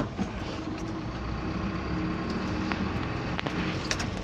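A car driving, heard from inside the cabin: a steady low rumble of engine and road noise with a faint even hum, and a few light clicks.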